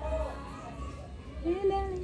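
Children's voices in the background, with one short higher call near the end.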